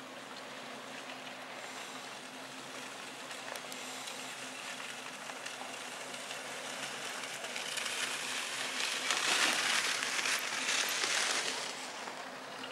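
Steady rushing noise with a faint low hum beneath it. It grows louder and crackly from about eight seconds in, easing off just before the end.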